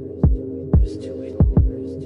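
Instrumental hip-hop beat: four deep 808-style bass kicks that drop in pitch over a steady held synth chord, with a short run of hi-hats about a second in.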